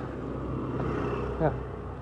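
Steady low hum of a motor vehicle engine, swelling slightly about a second in.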